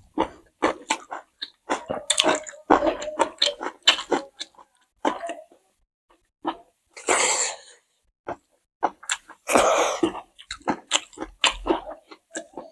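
Close-miked mouth sounds of people eating rice and curry by hand: many short wet clicks and smacks of chewing. Two longer, breathy bursts of noise come about seven seconds in and again near ten seconds.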